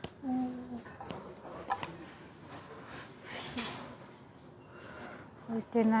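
Brief voice sounds at the start and end, with a few light clicks and a short rustle from handling a packaged item, over low shop background.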